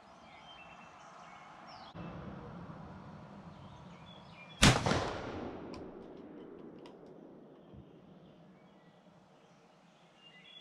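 A single shot from a Browning 10-gauge shotgun firing a 3½-inch magnum slug load, about halfway through, followed by an echo that fades over a second or so.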